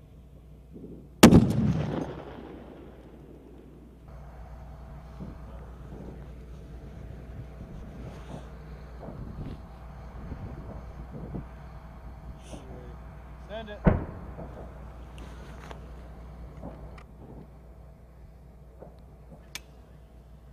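.50 caliber sniper rifle firing a single loud shot about a second in, its report rolling away in an echo that fades over a second or two. A second, quieter sharp report comes near the fourteen-second mark.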